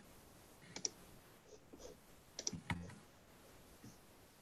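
Faint clicks of a computer mouse: a single click just under a second in, a quick cluster of several about two and a half seconds in, and a faint one near the end.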